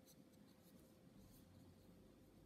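Near silence with the faint, soft scratch and rustle of a 2 mm crochet hook drawing yarn through stitches, in a few light strokes.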